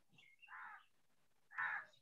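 A bird calling twice in the background, two short calls about a second apart, the second louder, with faint chirps around them.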